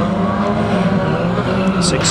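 Engines of several banger-racing vans running together as the pack races, their engine notes overlapping in a steady drone.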